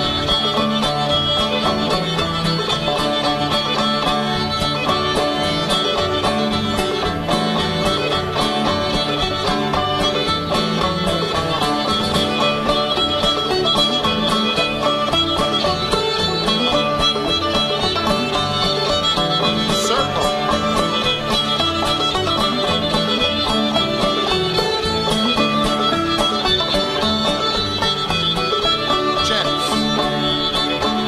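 Live contra dance band playing a string-band dance tune at a steady, driving dance tempo.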